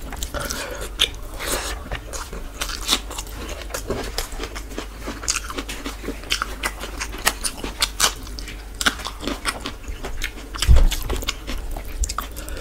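Close-miked chewing and mouth smacking of a man eating rice and chicken with his hand, a steady run of short clicks and crunches. A louder low thump comes near the end.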